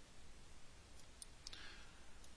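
Near silence with a few faint computer mouse clicks from about halfway through.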